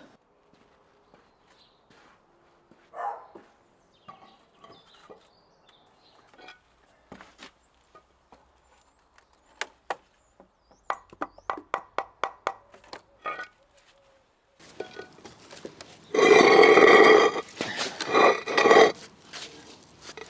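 A hammer knocking a concrete paving slab into place, a quick run of sharp taps a few a second. Near the end comes a loud rough grating noise lasting a few seconds, the loudest sound here.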